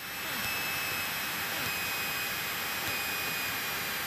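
Cessna 172's piston engine and propeller running steadily at taxi power, heard inside the cockpit. It swells up over the first half second and then holds steady, with a faint steady high whine over it.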